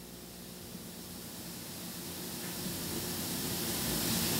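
Steady hiss with a faint low hum underneath, growing gradually louder.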